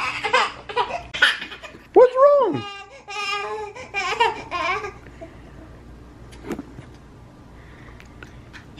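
Laughter and playful wordless voices in short bursts over the first few seconds, with one high call that rises and falls about two seconds in. After that it goes quieter, with a single sharp click.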